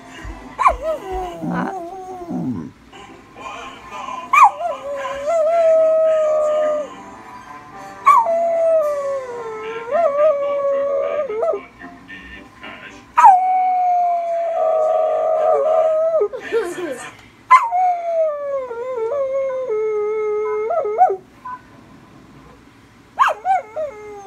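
A dog howling: about four long howls of a few seconds each, every one sliding down in pitch, with shorter calls near the start.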